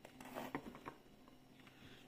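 Faint strokes of a small brush spreading melted chocolate inside a thin clear plastic egg mold, a few soft scrapes and light ticks in the first second, then almost nothing.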